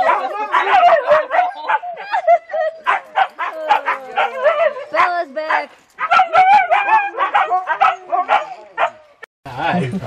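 Siberian huskies vocalizing in a run of short, wavering, yodel-like yips and whines, one call after another, with brief pauses about six seconds in and near the end.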